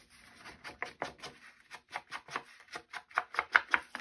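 Ink being worked onto paper edges with an ink applicator: quick, repeated scuffing dabs against the paper, about five strokes a second, louder near the end.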